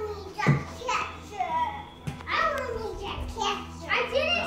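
Young children's voices at play: high calls sliding up and down in pitch, without clear words.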